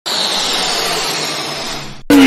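A steady hissing noise with no clear pitch. It starts suddenly, fades slightly near the end and cuts off.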